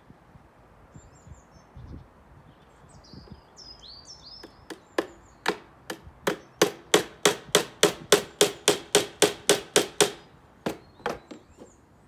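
Small hammer striking the wooden panels of a bird box: a run of about twenty sharp blows starting around five seconds in and quickening to about five a second, then two last taps near the end.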